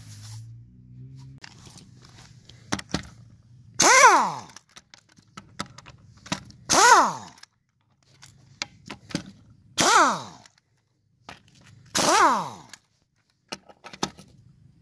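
Impact wrench loosening a wheel's lug nuts: four short hammering bursts, each about half a second long with a sweeping whine, with faint clicks between them.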